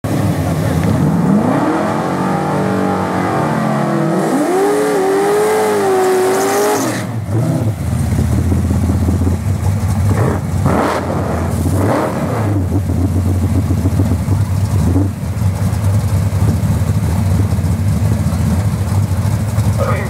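Drag-racing Fox-body Ford Mustang's engine revving in rising and falling sweeps for about seven seconds, then settling to a steady, loud idle at the starting line with a few short throttle blips.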